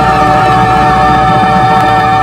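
The closing chord of a 1970s pop recording, held steady by band and orchestra with one sustained high note on top.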